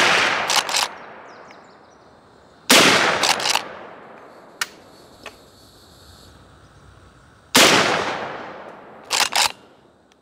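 .357 Magnum carbine firing Buffalo Bore 180-grain long flat-nose loads: two shots about five seconds apart, with the tail of a third shot right at the start. Each shot is followed within a second by a couple of short sharp knocks. Two light clicks come between the second and third shots.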